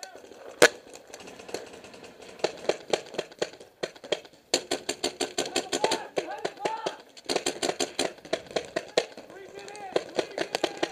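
Paintball markers firing quick strings of shots, several a second, with one loud single shot just after the start and the heaviest volleys from about halfway through.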